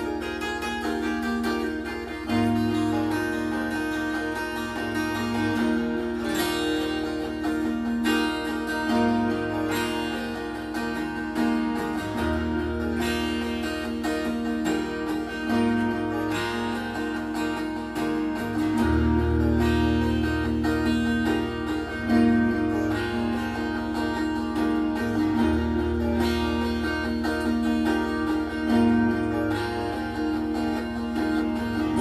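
Acoustic guitar played through a chord progression, with the chord changing about every three seconds.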